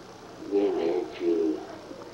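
A man's recorded voice played back from a portable cassette recorder into a handheld microphone, muffled, in two drawn-out phrases.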